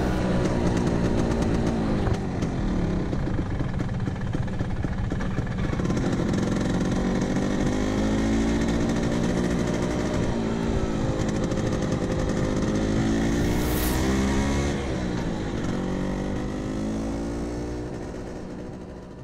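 Vespa PX scooter's two-stroke engine running on the move, its pitch rising and falling as it speeds up and eases off. It fades away near the end.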